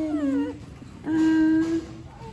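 Long drawn-out voice notes: a note sliding down in pitch in the first half second, then a steady held note through much of the second half.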